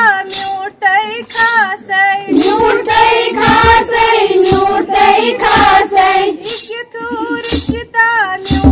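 A high female voice singing a Kashmiri wedding song in a wavering, ornamented melody, over a steady beat of sharp strokes.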